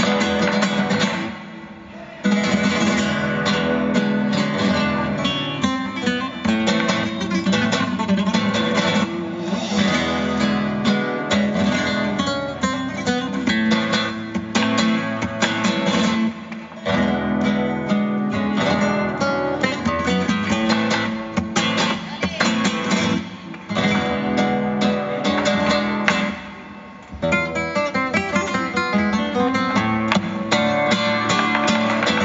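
Live flamenco music led by a nylon-string flamenco guitar, with violin and percussion, full of sharp percussive strikes. The music drops away briefly twice, about two seconds in and near the end.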